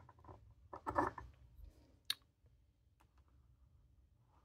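Small handling noises on a desk as a bamboo-handled ink tool is picked up and brought to the page: a brief rattle at the start, a cluster of knocks and rustling about a second in, then a single sharp click a second later and a fainter one near the end.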